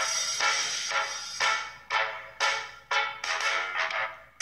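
Instrumental backing track between sung lines: short accented band chords about twice a second, each fading quickly.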